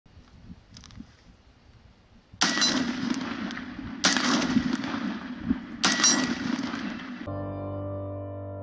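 Shots from a Radical Firearms 10.5-inch AR short-barrelled rifle in 7.62x39: three loud bursts of fire about a second and a half apart, each trailing a long ringing tail, after a few faint clicks. Music comes in near the end.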